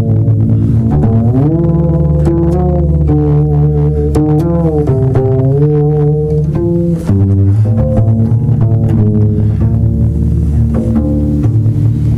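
Double bass played pizzicato like a guitar: fingers strumming and rapidly plucking chords over low sustained notes, with notes sliding up and down in pitch about a second and a half in and again around the middle.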